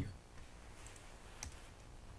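A single computer mouse click about one and a half seconds in, over faint room noise.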